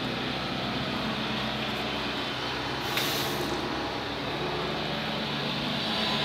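Steady background noise of road traffic, with one brief hiss about three seconds in.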